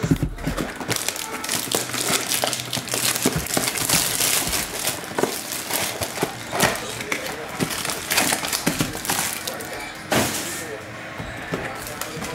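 A cardboard trading-card box being torn open and its foil-wrapped card packs pulled out: a run of short crinkling, rustling and scraping sounds from paperboard and foil wrappers.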